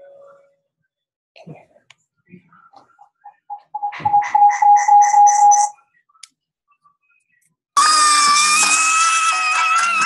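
Excited people on a video call, heard as played-back video audio: a held, pulsing high cry about four seconds in, then loud sustained shrieking of excitement near the end, with music underneath.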